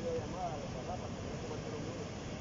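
Steady rushing noise of a swollen, flooded river, with faint voices in the background.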